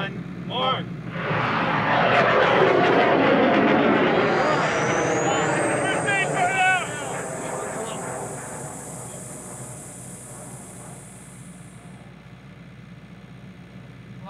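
First-stage motor of an amateur two-stage rocket igniting at liftoff: a loud roar starts about a second in and slowly fades as the rocket climbs away. A high whistle rises in pitch and then holds until it stops about twelve seconds in. Onlookers shout and cheer a few seconds after liftoff.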